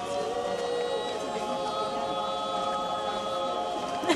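Mixed choir of men's and women's voices singing a cappella, holding long sustained chords.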